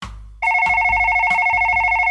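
A telephone ringing: one long trilling ring that starts about half a second in, ahead of a call being answered.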